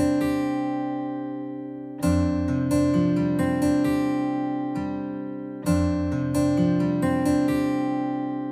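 Background music of acoustic guitar chords. The chords are strummed and left to ring and fade, with fresh strums about two seconds in and again near six seconds.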